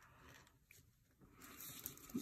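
Near silence, with faint handling sounds of thin craft wire being wrapped by hand and a light tick near the end.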